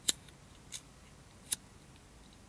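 A cigarette lighter struck repeatedly while lighting a cigarette: three sharp clicks about three-quarters of a second apart, the middle one fainter.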